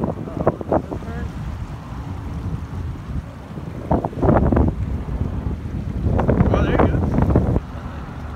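Wind buffeting a phone's microphone, a heavy, uneven low rumble that drops away sharply near the end.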